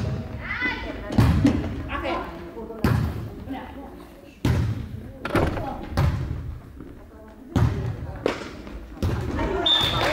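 A volleyball rally in a gymnasium: a string of sharp thumps as the ball is served, passed, set and hit, roughly one every second, each echoing in the hall, with players' voices calling between the hits. A short whistle blast sounds near the end.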